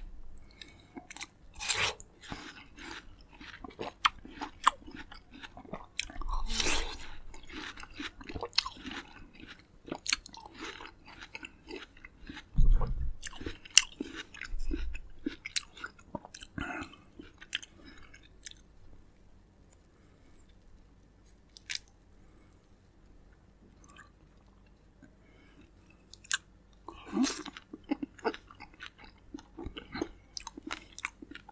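Close-miked chewing of juicy fresh fruit, watermelon dipped in yogurt among it, full of wet smacks and clicks. There are a couple of low thumps around the middle, then a quieter stretch, and a louder wet burst near the end as a ripe fig is handled and torn open.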